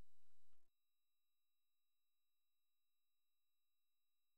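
Near silence: a faint steady electrical hum that cuts off about half a second in, leaving dead silence.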